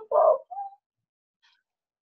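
A person's brief voiced sound, under a second long, heard over a video call.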